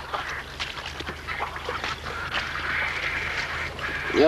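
Repeated short calls of farmyard fowl, duck-like, over a steady low hum.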